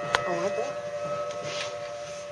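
Federal Signal Thunderbolt 1000T outdoor warning sirens sounding a steady tone, the Alert signal of a tornado siren activation, heard from inside a building.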